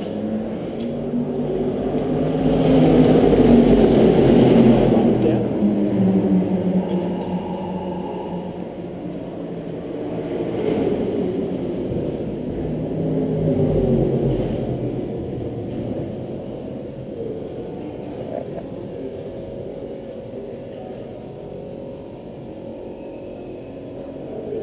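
Engine noise from racing cars echoing around a pit garage, with background voices. It rises to a peak a few seconds in, again about halfway through, then eases off.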